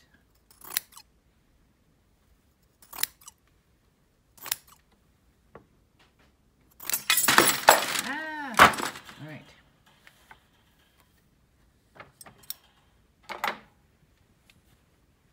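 Scissors snipping through silk warp threads on a loom, a few separate cuts a second or two apart. About seven seconds in comes a longer, louder scraping and rustling with squeaky, sliding tones as the cut cloth is handled on the loom, then a few more light clicks and snips near the end.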